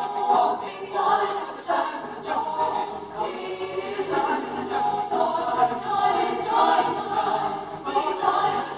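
Mixed choir of young men and women singing unaccompanied in parts, in rhythmic phrases with a fresh accented entry about every second.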